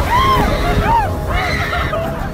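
Amusement-ride passengers yelling in short whoops that rise and fall in pitch, three in quick succession, over a steady low rumble.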